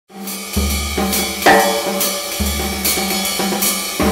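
Taye GoKit drum kit with UFIP cymbals playing a groove: two bass-drum hits, about half a second in and about 2.4 s in, a loud snare hit near 1.5 s, and hi-hat and cymbal strokes throughout.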